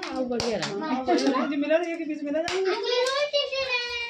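A high-pitched child's voice, with no clear words, rising and falling in one long drawn-out sound near the end, over other voices. Short clicks and rustling of baby clothes being handled and unfolded.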